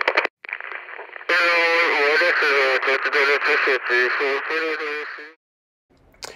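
A person's voice, with a short stretch of speech at the start, then steadier talk or singing for about four seconds that stops about a second before the end.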